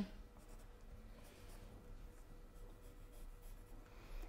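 Faint scratching of a pencil drawing along a paper pattern piece.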